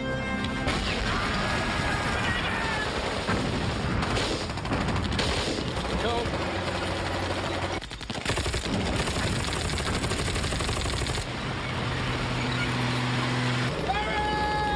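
War-film battle sound: heavy machine-gun and rifle fire breaks in under a second in, over the film's music, with men shouting through it. The firing drops out briefly about eight seconds in, then goes on.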